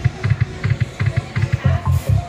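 Ainsworth video slot machine's spin sounds: a quick, even run of low thumps, about five a second, with light clicks over them as the reels spin and stop.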